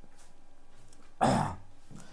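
A man clearing his throat once, a short rasp a little past a second in, in a small room.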